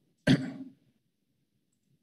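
A person clearing their throat once, briefly, about a quarter second in.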